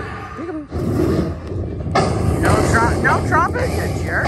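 Buffalo Link slot machine's win tally after its bonus round: about two seconds in, a loud, dense, rumbling sound effect with thuds starts as the win amount counts up, with rising and falling sweeps over it.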